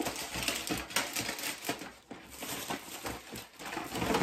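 Plastic packaging and haul items rustling, crinkling and clicking as they are rummaged through, in a dense, irregular run of small crackles and taps.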